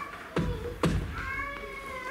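Two kick drum thumps about half a second apart in a heartbeat-like pattern, followed by a held, slightly wavering high tone.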